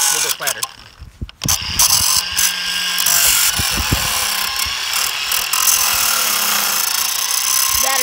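Angle grinder with a cut-off wheel grinding off metal screws that stick out of a reused wooden board. It runs briefly, drops out about a second in, then starts again and runs steadily through the rest.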